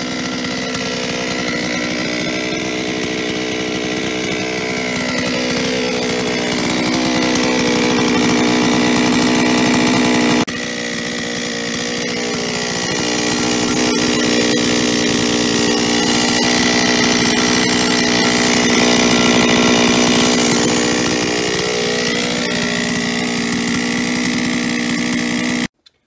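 Solo 644 chainsaw's two-stroke engine idling steadily with a metallic rattle ("das Ding klappert"). The rattle is piston slap from a worn piston, which was later measured with about 0.12 mm of clearance in the cylinder.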